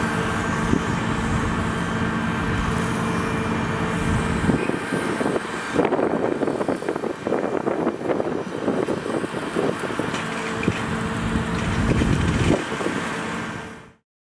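Fire hose spraying water under pressure, over a steady engine hum that drops away about four and a half seconds in and comes back near the end. The sound fades out at the very end.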